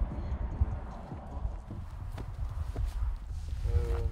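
Wind buffeting the microphone as a heavy, uneven rumble, with a few scattered knocks and a brief voice near the end.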